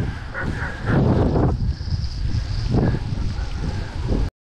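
Wind buffeting the microphone of a handlebar camera on a moving road bicycle, rising in louder gusts about a second in and again near three seconds.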